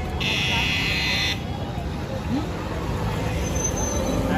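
A loud buzzing tone starts just after the beginning and lasts about a second, over steady street noise.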